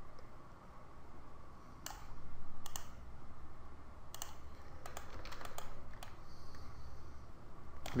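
Scattered clicks of a computer mouse and keyboard: a few single clicks and a quick cluster about five seconds in, over a low steady hum.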